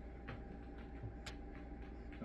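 A few faint, sharp clicks from a small glass hot sauce bottle and its cap being handled, one a little past a second in, over a steady low hum.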